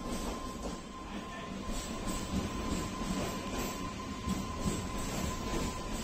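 Multiple-unit passenger train running in along a station platform: a steady rumble of wheels on rail with a run of irregular knocks from the wheels over the rail joints, and a thin steady whine under it.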